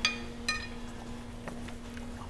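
Utensils clinking against ceramic plates while eating: two sharp, ringing clinks about half a second apart.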